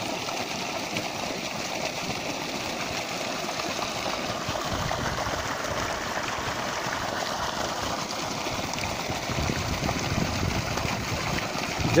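Water from a 3 HP open-well pump gushing out of a plastic discharge pipe and splashing into a muddy channel: a steady rushing noise that grows a little louder after a few seconds.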